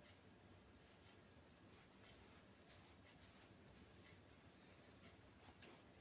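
Near silence: faint room tone with soft, faint rubbing of wet cotton wool wiped over the skin of the face.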